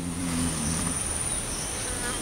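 Insects in the surrounding bush making a steady high-pitched buzz over a soft background hiss, with a brief low hum of a man's voice in the first half-second.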